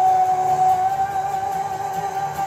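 A man's voice holding one long, steady high sung note, backed by an acoustic guitar.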